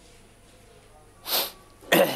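Faint steady line hiss, then about a second in a short, sharp burst of breath noise from a man, with a second burst at the end as he begins to speak.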